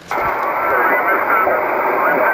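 Receiver hiss from a Kenwood TS-60 6-metre SSB transceiver, a steady rushing noise cut off above the voice range, with a weak station's voice faintly heard under it.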